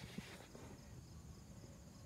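Near silence with faint, high insect chirping, a cricket, pulsing about four times a second.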